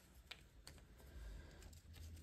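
Faint handling of paper pieces: a couple of light clicks and a soft rustle as torn paper strips are laid and pressed onto a paper tag.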